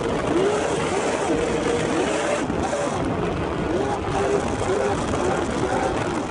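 Steady rush of wind and road noise, recorded from a moving car running alongside other cars in a roll race, with excited voices talking over it.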